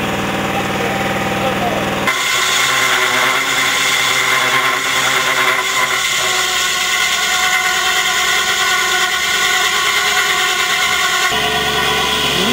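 Engine running with a low steady hum, then, after an abrupt cut about two seconds in, a core drill's steel core barrel grinding into stone with a steady, high-pitched grinding whine. Another abrupt cut comes near the end.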